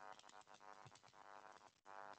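Near silence, with faint, indistinct voices far in the background.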